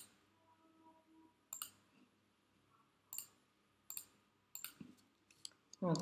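Computer mouse clicking: a handful of short, sharp, irregularly spaced clicks against faint room tone.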